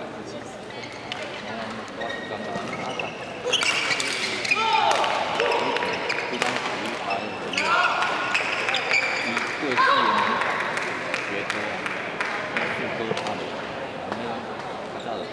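Badminton rally: sharp racket hits on the shuttlecock and court shoes squeaking on the floor, the clicks and squeals starting about three and a half seconds in, with voices in the hall.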